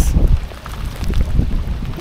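Gusting wind buffeting the microphone, a heavy uneven low rumble that rises and falls.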